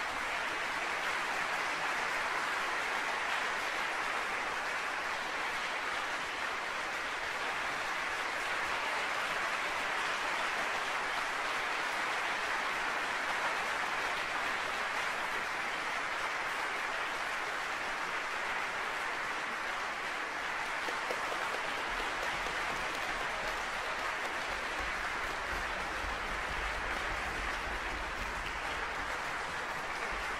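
Concert-hall audience applauding steadily, a dense even clapping.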